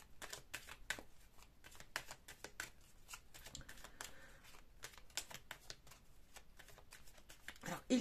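Deck of oracle cards being shuffled by hand: a quick, uneven string of soft card flicks and clicks.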